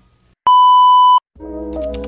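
A single loud, steady electronic beep lasting under a second, cut off sharply, followed moments later by upbeat intro music.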